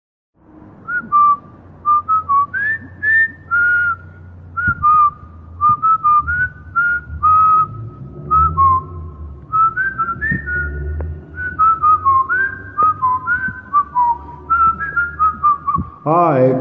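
A person whistling a tune in short, stepped notes, over a steady low rumble.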